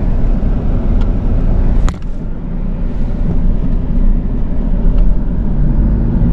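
Steady low road and engine rumble heard inside the cabin of a moving Toyota Hilux Revo pickup. A single sharp click comes about two seconds in.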